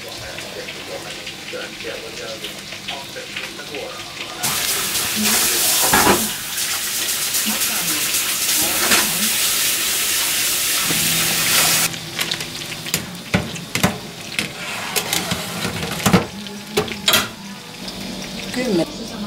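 A kitchen tap running into a sink for about seven seconds, turned on and off abruptly a few seconds in, followed by a few sharp knocks and clicks of kitchen utensils.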